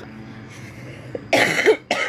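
A woman coughing: one harsh cough a little past halfway and a second short one at the end. The coughing comes from laryngitis.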